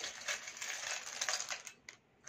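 A hand rummaging through a pot of small charms, the charms clicking and rattling against each other; it stops shortly before the end.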